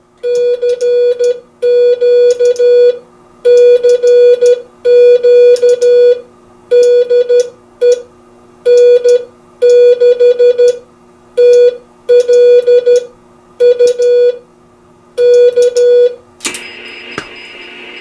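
Morse code (CW) sent with a paddle and electronic keyer on a Heathkit DX-60A transmitter: a mid-pitched beep keyed on and off in groups of dots and dashes, with short gaps between characters. The keying stops about two seconds before the end, leaving a brief hiss over a low steady hum.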